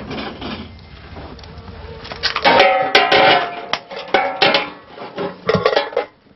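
Metal clanking and ringing from a large aluminium rice pot as its lid is handled and lifted off. The loudest burst of knocks comes about two and a half seconds in, with a few more near the end.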